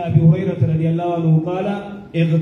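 A man's voice chanting a religious recitation in drawn-out, held tones into a microphone.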